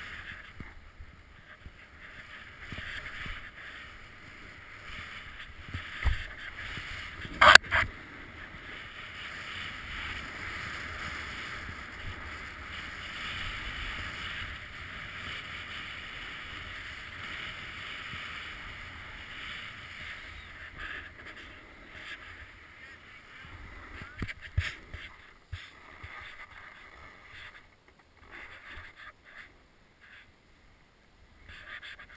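Steady hiss of snow under a rider sliding and carving down a powder run, with wind buffeting the microphone. A sharp knock comes about seven and a half seconds in, with smaller knocks near six and twenty-four seconds.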